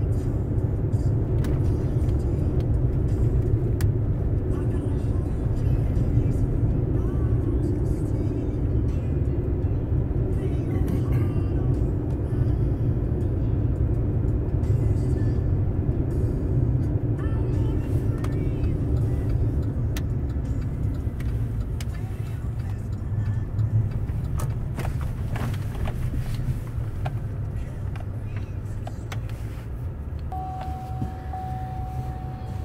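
Steady low engine and tyre rumble of a four-wheel-drive vehicle driving on a snow-covered road, heard from inside the cab, easing a little over the last several seconds as it slows.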